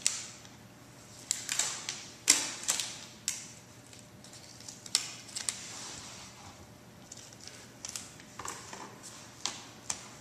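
Scattered sharp taps and clicks, about a dozen, from hands handling a plastic two-liter bottle and a small card thermometer; the loudest knock comes a little over two seconds in.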